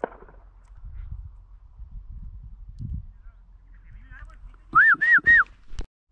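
Three quick, loud whistled notes in a row about five seconds in, each rising then falling in pitch, followed by a sharp click. A low rumble runs underneath, with a brief sharp noise at the very start.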